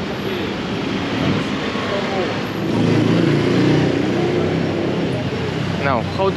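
City street traffic, with a motor vehicle's engine passing close by. It is loudest from about three to five and a half seconds in.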